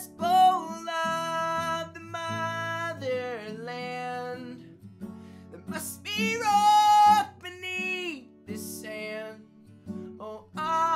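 A solo singer with strummed acoustic guitar, performing a country-folk song with long held, sliding vocal notes. There is a short pause between phrases about halfway through.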